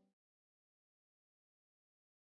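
Digital silence: the last faint trace of faded-out guitar music cuts off at the very start, then nothing at all.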